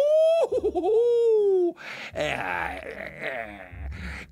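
A man's voice making a long ghostly 'wooo', rising and then slowly falling in pitch. It is followed, about two seconds in, by a chuckling laugh.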